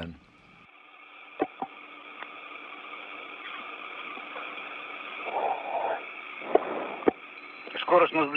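Hiss of an open space-to-ground radio channel, cut off above the upper treble like a radio link, slowly growing louder, with a few short clicks and a brief faint murmur about five seconds in.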